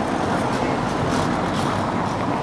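Steady outdoor street noise: a low, even rumble of traffic.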